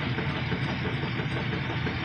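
Steady machine hum with an even hiss over it, unchanging throughout.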